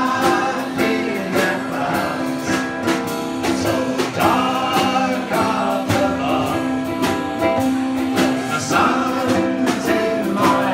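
Ukulele band playing live: several ukuleles strummed in a steady rhythm while a group of men sing together into microphones.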